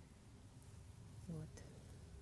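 Near silence: faint background hiss, broken about one and a half seconds in by a brief voiced syllable from the speaker.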